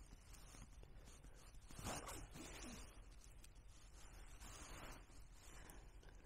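Near silence: faint rustle and crackle of a small kindling fire just catching, with twigs being handled around it, and a slightly louder short sound about two seconds in.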